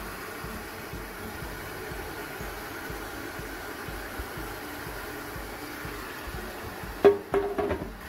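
Faint background music over a steady hum, broken about seven seconds in by a sudden loud clatter with a short ringing after it.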